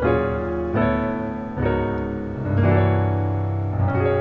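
Digital piano playing a slow progression of sustained gospel chord voicings, a new chord struck about every second.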